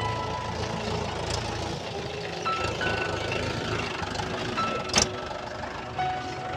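Farm tractor engine running as it pulls a loaded trolley past, under background music. There is a single sharp knock about five seconds in.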